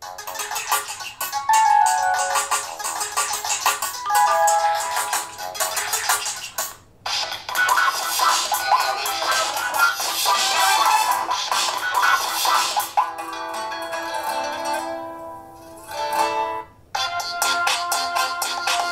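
Android Lollipop ringtone previews playing one after another through a small Frogz Tadpole Bluetooth speaker. Each short tune stops as the next is picked, with brief gaps about 7 and 17 seconds in.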